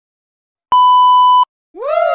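A steady, high-pitched censor-style bleep tone, under a second long, switched on and off abruptly. Just before the end a short sound effect starts, swooping up in pitch and back down.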